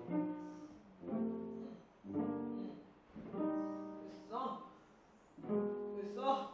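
String ensemble of violins, violas and cellos playing short, separate phrases about a second apart during a rehearsal. Each phrase starts sharply and fades before the next.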